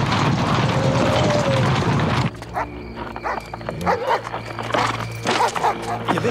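Film soundtrack: music over a loud, dense din that cuts off abruptly about two seconds in. Quieter sustained music follows, with a few short animal-like calls near the end.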